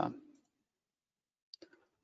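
A man's voice trails off, then near quiet, then a few faint quick clicks about a second and a half in.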